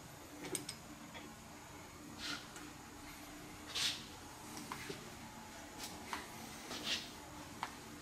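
A few faint metallic clicks and scrapes, spread out, as a silver bar is handled and fed through a hand-cranked wire rolling mill, over a faint steady hum.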